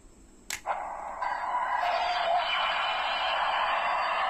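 A click, then a Dark Tiga Spark Lens toy's electronic transformation sound effect playing from its small built-in speaker. The effect starts about half a second in and builds to a steady, dense sound about a second in.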